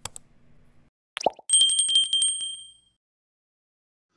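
Subscribe-button animation sound effect. A click, then a short tone dropping in pitch about a second in, then a notification bell rings with a fast trill and fades out over about a second and a half.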